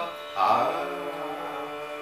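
Male voice singing a Carnatic phrase in raga Kaapi over a steady drone. The voice enters about half a second in, glides, and settles on a held note.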